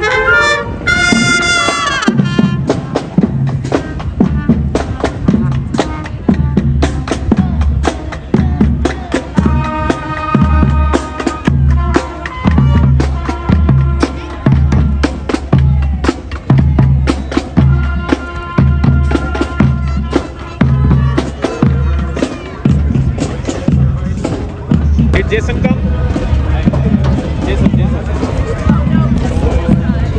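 Marching band playing as it passes: a Yamaha bass drum and other drums beat a steady marching rhythm, with brass and woodwinds holding notes over it.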